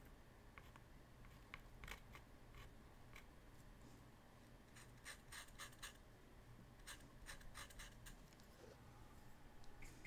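Near silence with faint scratching of a small paintbrush stroking paint onto paper, coming in short clusters of strokes a few times.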